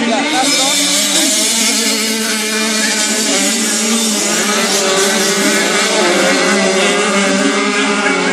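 Several 85cc two-stroke grasstrack motorcycles running at high revs as they race around the track, their engines' pitch rising and falling as they accelerate and ease off.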